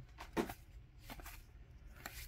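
Faint slide and rustle of glossy trading cards being moved one at a time from one stack to another in the hands, with a few soft clicks.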